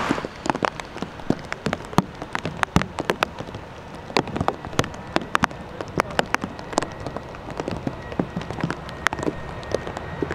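Raindrops striking a surface close to the microphone: irregular sharp ticks, several a second, over a low steady background. A faint steady high tone comes in near the end.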